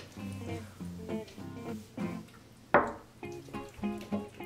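Background music of plucked acoustic guitar notes, with one short, louder sound nearly three seconds in.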